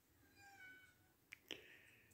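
A kitten's faint, high-pitched meow, then two quick sharp clicks a little after a second in, the second followed by another short, faint meow.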